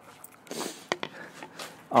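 Quiet handling noises as a man carries a plastic PVC pipe elbow, with a short sharp click about a second in.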